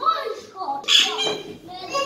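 Young children's voices while they play, shouting and babbling without clear words, with one loud outburst about halfway through.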